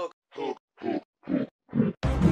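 Five short grunt-like vocal sounds, about two a second, each a brief pitched burst with a bending pitch and a gap of silence between.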